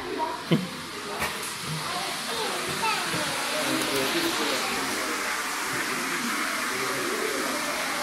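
Indistinct voices of children and adults over a steady hiss that grows fuller from about three seconds in, with one sharp click about half a second in.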